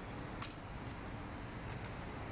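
A metal thurible swung on its chains to incense the Gospel book, the chains clinking against the censer: one sharp clink about half a second in and a few lighter ones near the end.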